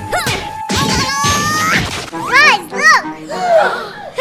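A thud from a large water balloon being stomped on, among added cartoon sound effects. Loud, rising-and-falling children's cries follow twice in the second half.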